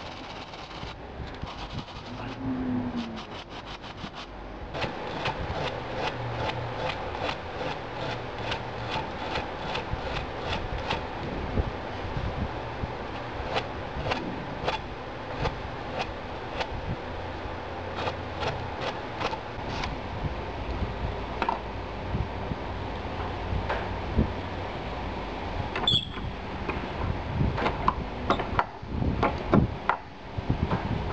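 Steel knife blade held in a bench vise, being worked by hand with an abrasive in repeated back-and-forth strokes, a rasping scrape with about two strokes a second, during final shaping of the blade.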